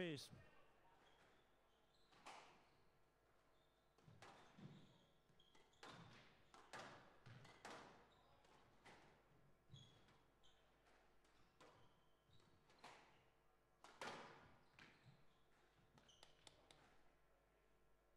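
Faint squash rally: the ball struck by rackets and hitting the court walls at irregular intervals of about a second or two, in a large reverberant hall.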